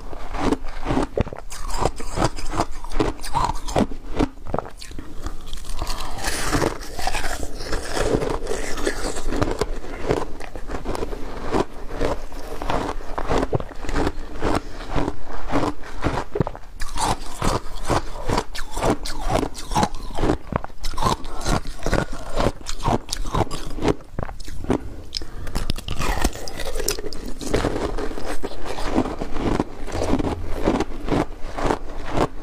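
Close-miked crunching and chewing of a block of frozen slushy ice: a continuous run of rapid, crisp crunches as it is bitten and chewed.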